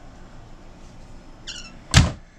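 Wooden kitchen cabinet door swinging: a short high hinge squeak about a second and a half in, then a sharp knock as the door shuts at the very end.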